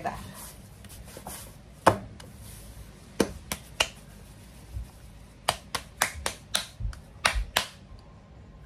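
Hands slapping and patting a lump of corn masa dough: a few separate sharp slaps, then a quicker run of pats in the last few seconds as a portion is pressed flat between the palms.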